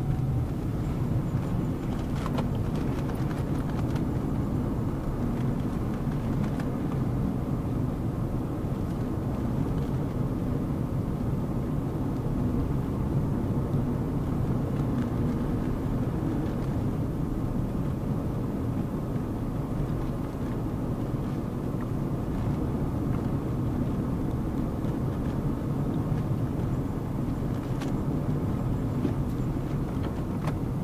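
Steady road noise inside a moving car's cabin: a low, even rumble of engine and tyres while driving.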